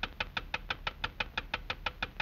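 A rapid, even ticking, about six sharp clicks a second: a cartoon sound effect.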